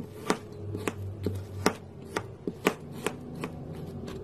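A Cuisinart kitchen knife chopping through a crumbly block of solidified paint. Its blade taps sharply on the hard surface beneath in a string of about nine uneven strokes.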